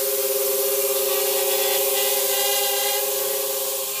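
HGLRC Rekon 3 nano quadcopter hovering close by, its four brushless motors and propellers giving a steady buzzing whine on two held pitches over a hiss of prop wash, easing slightly near the end.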